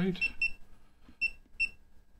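Short high-pitched key beeps from a FNIRSI LC1020E LCR meter as its buttons are pressed to step through its menus: two quick beeps, then two more a little past a second in.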